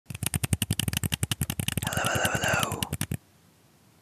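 Rapid tapping on plastic mini football helmets, about a dozen sharp taps a second, with a scratchier rubbing stretch in the middle. It stops abruptly about three seconds in.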